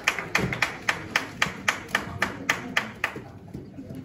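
Hands clapping close to the microphone in a steady rhythm, about four claps a second, applause that stops about three seconds in.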